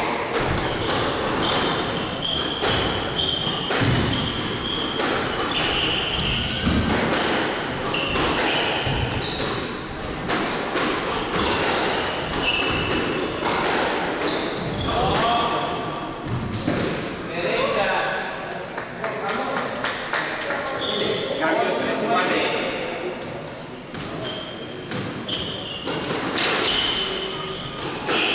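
Squash rally: the ball cracking off rackets and thudding against the court walls, with sneakers squeaking on the wooden floor, all echoing in the enclosed court. Hits come every second or so, and the play thins out in the last few seconds.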